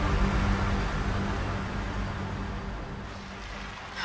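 Dramatic background score ending on a low sustained drone that fades steadily away.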